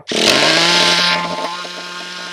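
Traxxas 3.3 two-stroke nitro engine started up and running. It comes in abruptly, louder and brighter for about the first second, then settles to a steady idle. Its clutch is worn out, and the mechanic calls it dead.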